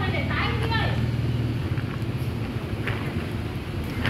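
A steady low hum, strongest in the first second and a half. A brief snatch of indistinct talk comes about half a second in.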